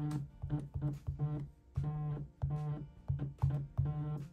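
iPhone 14 Pro's haptic vibration motor buzzing in a string of short and longer pulses, about nine in all, each a low buzz starting with a click, as a custom vibration pattern is tapped out on its screen.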